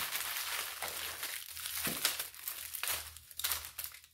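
Wrapped candies and lollipops in plastic wrappers crinkling as a hand rummages through a basket of them, in irregular rustles that thin out near the end.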